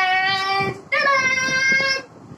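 A boy's voice singing out two long held notes, the second higher than the first, with a short break between them.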